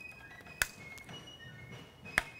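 A single sharp click about half a second in, then a fainter tick, from handling the lock of a reproduction Short Land pattern Brown Bess flintlock musket during a loading demonstration, over quiet room tone.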